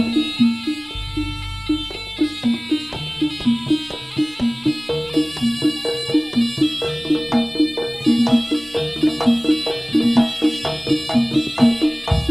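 Javanese jaranan gamelan music played live: bronze percussion striking short repeated notes in a steady, quick rhythm over kendang drum strokes.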